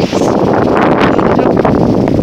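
Strong wind buffeting the camera's microphone, a loud, steady rumbling roar.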